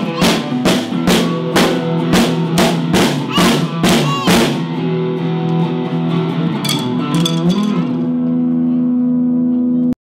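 Drum kit and electric guitar playing together, the drums hit about three times a second. The drumming stops about four and a half seconds in, leaving a held guitar chord ringing with a few light taps, and the sound cuts off suddenly just before the end.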